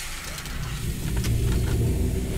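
A car engine running with a deep, lumpy low rumble.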